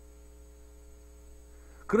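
Steady electrical hum with faint steady tones above it, and a man's voice cutting back in at the very end.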